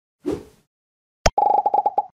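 Logo-animation sound effects: a short swoosh about a quarter second in, a sharp click just past one second, then a rapid run of short pitched beeps, about a dozen a second, as the web address types onto the screen letter by letter.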